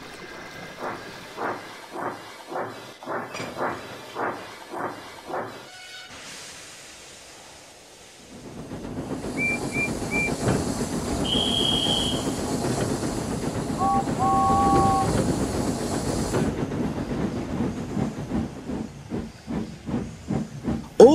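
Steam locomotive sound effects: slow, regular puffing about every 0.6 s for the first few seconds. After a short lull comes a steady hiss of steam and train noise, with three short high whistle peeps, a longer high whistle, and then a lower two-note steam whistle.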